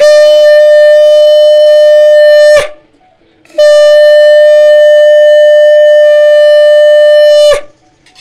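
A conch shell (shankha) blown in two long, steady blasts on one unwavering note. The first lasts about two and a half seconds. After a short break, the second lasts about four seconds.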